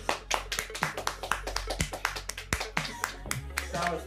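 Sharp irregular clicks, about five a second, over soft music.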